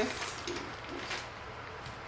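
Soft rustling of poly deco mesh being handled and smoothed flat on a cutting mat, with a couple of faint brushes near the start and about a second in.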